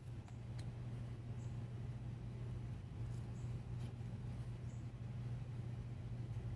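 Stiff photo cards being slid off a stack by hand, with faint short swishes and small clicks every second or so, over a steady low hum.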